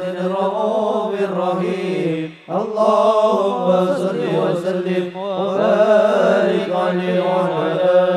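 Men's voices chanting Arabic devotional verses in praise of the Prophet (sholawat), amplified through microphones, with a brief break about two and a half seconds in.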